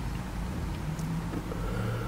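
Low steady hum of a car's engine idling, heard from inside the cabin.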